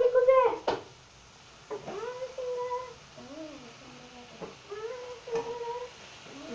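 A girl's voice holding a few short, steady notes between spoken sounds, with a few light clicks of a metal fork against a frying pan.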